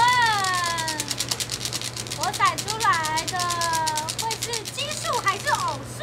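Dice rattling rapidly inside a metal dice cup as it is shaken for about four and a half seconds, with women's high voices calling out over it.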